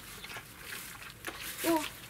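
German shepherd puppies lapping and smacking at food in a steel bowl: faint, irregular wet clicks. A woman says a short "oh" near the end.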